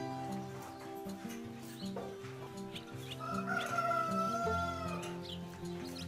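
Background music with long held notes, with short high chirps of barn swallows at the nest scattered over it. A long wavering higher tone is held from about three seconds in to near five seconds.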